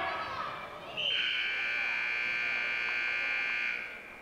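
Gym scoreboard buzzer sounding one steady, high tone for nearly three seconds, starting about a second in: the signal that a wrestling period has ended. Spectators shout over the first second.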